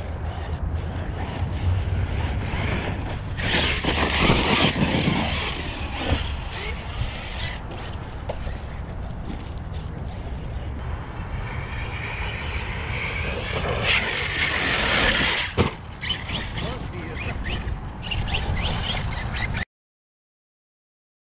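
Arrma Kraton 6S RC truck running over dirt and gravel: a steady rush of tyre and wind noise, with louder bursts of brushless motor whine as it accelerates and a rising whine about two-thirds of the way through. The sound cuts off suddenly near the end.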